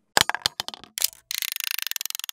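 A wind-up timer being set: a few sharp clicks, then a fast run of even ratcheting clicks from about a second and a half in, as the dial is turned.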